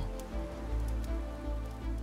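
Soft background music under the pause: sustained low tones over a deep hum, with a faint even hiss.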